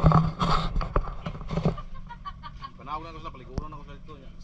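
Human voices making non-word sounds and loud breaths, in short bursts during the first two seconds. A shorter voiced sound follows about three seconds in, then a single sharp click.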